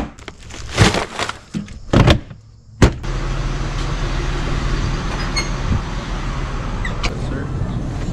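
A few knocks and bumps of things being handled, then, after a sharp click about three seconds in, a steady low machine hum with a noisy hiss.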